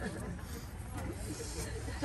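Faint, scattered voices over a steady hiss and a low rumble, in a lull after group singing stops.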